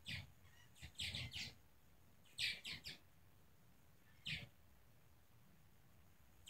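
Purple martins calling in flight: short chirping calls that come in quick clusters of two or three, the loudest about two and a half seconds in, then a single call a little after four seconds.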